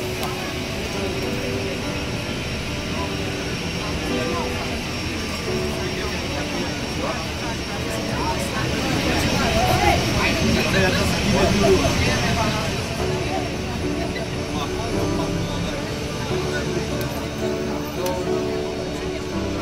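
Steady rumble and hiss of airport apron noise heard through glass, with people talking over it, loudest around ten seconds in, and quiet guitar music underneath.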